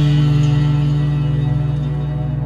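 Warwick electric bass holding one note that rings on with steady pitch and slowly fades.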